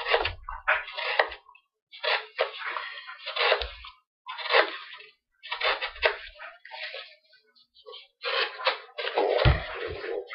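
Great Eastern Cutlery Workhorse Whittler pocket knife blade slicing through a cardboard box in quick, irregular strokes, each cut a short scraping rasp, with a couple of dull thumps near the end.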